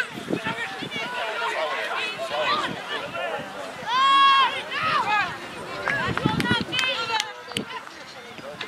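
Voices of young players and onlookers shouting and calling out during rugby play, with one long, high shout about halfway through.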